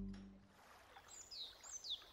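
Faint outdoor ambience with two short bird chirps, each falling in pitch, about a second in and near the end. A lingering musical tone fades out in the first half second.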